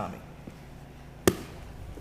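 A single sharp slap of a body or hand against a foam grappling mat about a second and a quarter in, as two grapplers scramble to change position.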